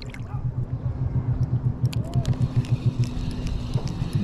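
Spinning reel being cranked to retrieve a jig, its handle and gears turning in a steady low pulse of about four beats a second, with light ticks over it.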